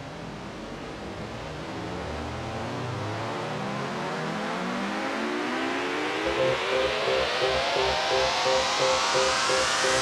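Electronic dance music intro: a synth riser sweeps steadily upward in pitch over a brightening wash of noise, growing louder throughout. About six seconds in, a repeating synth note and a low pulsing beat come in beneath it.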